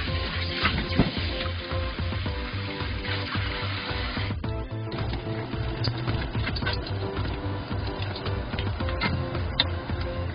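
Background music with a steady beat, over kitchen tap water running into a stainless steel bowl. The running water stops abruptly about four seconds in, and a few light knocks follow.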